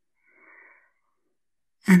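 A faint, short in-breath of about half a second between spoken phrases, followed near the end by the start of speech.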